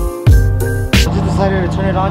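Background music with a beat and keyboard chords cuts off about a second in. After it comes the steady low hum of a 2014 Chevrolet Silverado pickup's engine idling.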